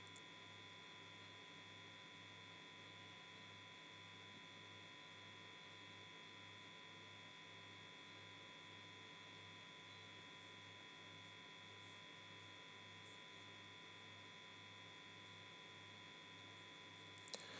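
Near silence: a faint electrical hum and steady whine from the recording, with a low hum that pulses about twice a second.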